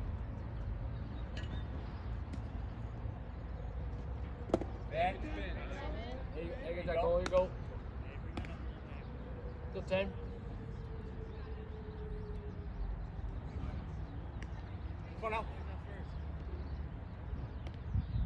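Open-air ballpark ambience: distant voices calling out across the field over a low steady rumble, with a few sharp claps, the clearest about four and a half, seven and ten seconds in.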